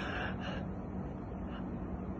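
A man's soft breath between spoken phrases, heard twice near the start over a steady low background hiss.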